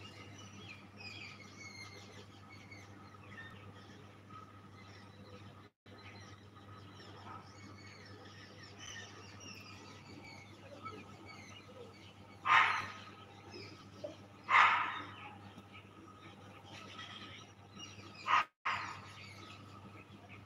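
Small birds chirping and twittering throughout, with three loud, short, harsh calls from a larger animal a bit over halfway through and near the end.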